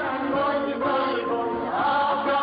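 Music: a Persian political song, with voices singing over sustained instrumental notes.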